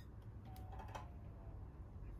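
A few faint clicks about half a second to a second in, as the release button of a Zupper EB-65C battery hydraulic cable cutter is pressed and its cutting blade retracts to open the jaw.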